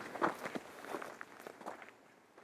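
Footsteps of several people walking on a dirt forest trail, a run of short, uneven steps that grow fainter toward the end.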